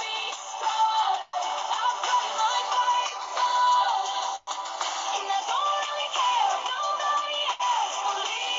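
Background music, its melody line sliding between notes. The audio cuts out for an instant about a second in and again about halfway through.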